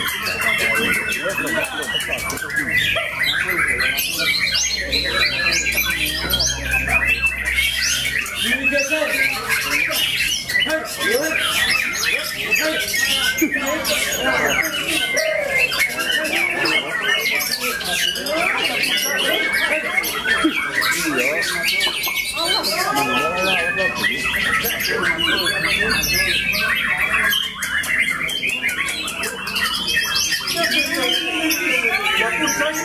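White-rumped shamas (murai batu) singing continuously, with many fast whistled and chattering phrases overlapping one another. Voices murmur underneath.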